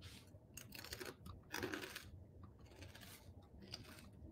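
Faint scattered clicks and scratching, with a short rustle about a second and a half in.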